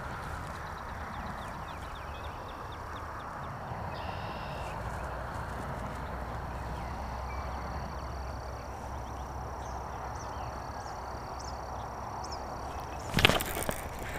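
Steady outdoor ambience beside a pond at dusk: an even background hiss with a faint high steady tone and a few faint chirps. About a second before the end there is a short, loud burst of noise as the fish is hooked.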